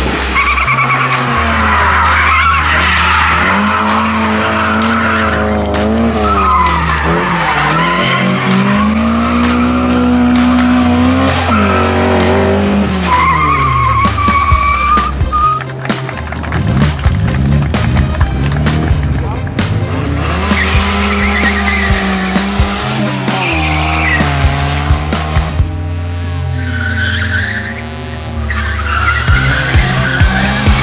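A Lada sedan driven hard through a cone course, its engine revving up and down between corners with tyres squealing, under background music with a steady, stepped bass line.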